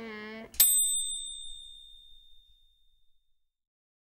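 A single bright, high ding, struck once about half a second in and ringing away over about two seconds, just after a voice's drawn-out 'quack' ends.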